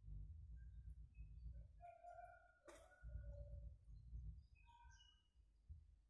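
Near silence: faint, scattered bird chirps over a low rumble, with a single sharp click a little past the middle.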